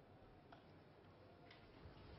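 Near silence: a stadium crowd holding a minute's silence, with a faint low hum and a few faint clicks about a second apart.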